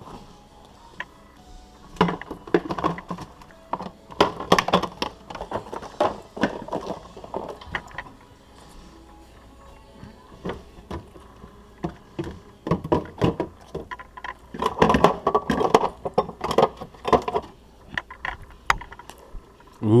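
A refrigerator door is opened and glass jars and bottles on its shelves clink and knock in irregular clusters as they are moved about, over background music.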